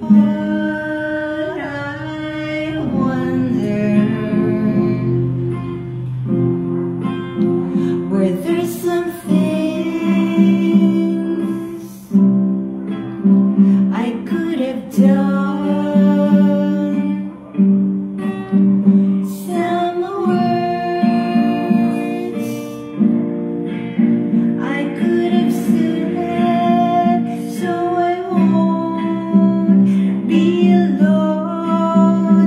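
A woman singing while strumming an acoustic guitar, with long held sung notes over the chords.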